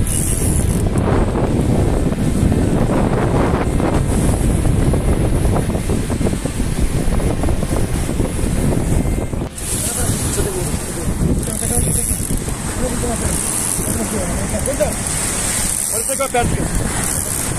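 Strong wind rumbling on the microphone with surf behind it, dipping briefly about nine and a half seconds in.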